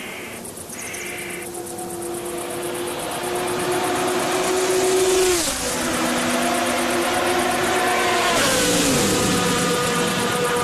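A race car engine heard from afar, growing steadily louder, its pitch dropping sharply twice: about halfway through and again near the end. Crickets chirp steadily in the background.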